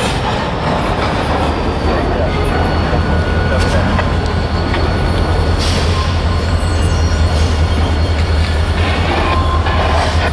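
EMD SD40-2 diesel-electric locomotive's 16-cylinder two-stroke engine running with a steady low drone as it pulls a cut of boxcars slowly through the yard. Thin wheel squeal and a couple of sharp clanks from the cars and track ride over it.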